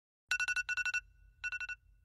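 Smartphone alarm ringing: groups of rapid electronic beeps on two steady pitches, starting about a third of a second in, with a short pause before the third group.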